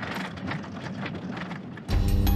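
Off-road vehicle driving along a rough dirt track: a steady engine and road noise with irregular knocks and rattles. Music comes in just before the end.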